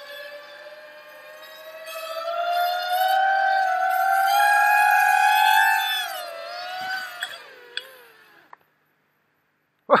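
Quadcopter's four Racerstar BR2205 2600KV brushless motors and props whining under full throttle while straining to lift a heavy load of about two and a half kilos in a thrust test. The whine rises in pitch and grows louder over a few seconds, holds, then falls and winds down to a stop about eight seconds in.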